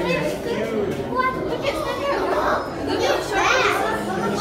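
Children's excited voices and chatter, several talking over each other, with high, rising-and-falling exclamations in the second half.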